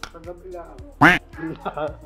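A man's short, loud exclamation "ay!" about a second in, over background music with a light steady beat and some talk.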